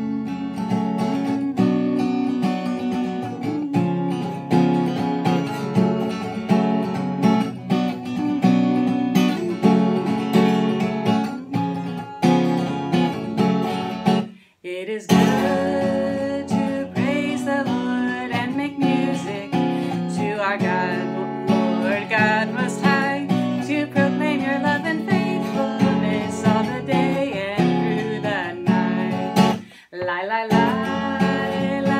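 Acoustic guitar strummed in a steady rhythm. The playing breaks off briefly about halfway, then resumes with a woman's singing voice over the guitar.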